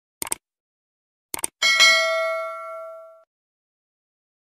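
Subscribe-button animation sound effect: two quick double clicks of a computer mouse, then a bright bell ding that rings on for about a second and a half and fades out.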